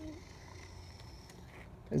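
Faint, scattered clicks of a plastic toy cash register being handled, over a low background rumble. A brief voice sounds at the start and a spoken word at the end.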